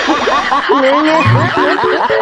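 Laughter: a quick run of short, pitched laughs rising and falling several times a second, with short musical notes cutting in during the second half.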